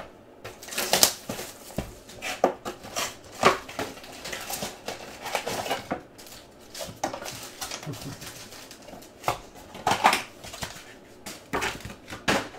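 Foil-wrapped trading card packs being pulled from a cardboard hobby box and handled: repeated crinkling and rustling of the foil wrappers with light taps and clicks as they are set down.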